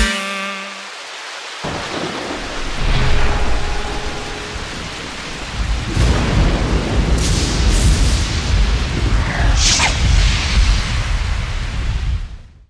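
Thunderstorm sound effect: a steady hiss of rain with deep rolling thunder that swells about six seconds in, and a sharp crack of thunder near the end.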